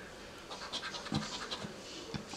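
A coin scratching the latex coating off a lottery scratch-off ticket: faint, short scraping strokes with a few light ticks.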